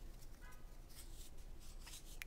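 Faint light clicks and rubbing of thick cardboard game tiles being handled and set down on a table, with a brief faint squeak about half a second in.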